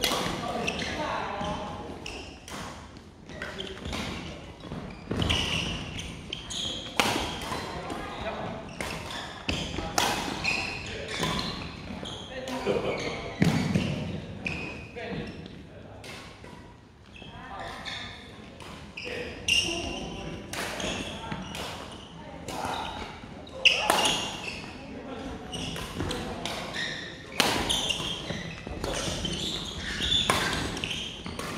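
Badminton rally: rackets striking the shuttlecock in irregular sharp cracks, with footsteps on a wooden court floor and voices carrying through a large hall.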